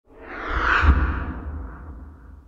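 Whoosh sound effect of a logo intro sting: a rushing swell that peaks about a second in with a deep bass boom, then fades away.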